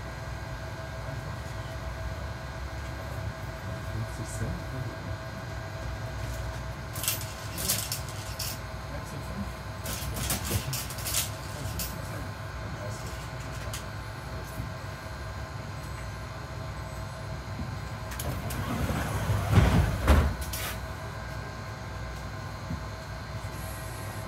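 Inside a Mercedes-Benz Citaro C2 G articulated city bus: steady low engine and cabin rumble with a faint steady whine, a few short rattles and clicks around a third of the way in, and a louder swell of rumble shortly before the end.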